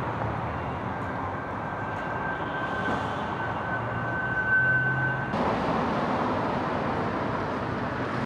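City street traffic noise: a steady rush of passing vehicles. A thin steady whine grows louder and then cuts off abruptly about five seconds in, where the street noise changes.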